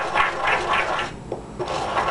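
Pestle grinding dried stevia leaves in a mortar, crunching the coarse flakes down to a finer powder in quick, even strokes at about four a second, pausing briefly a little after one second in and starting again near the end.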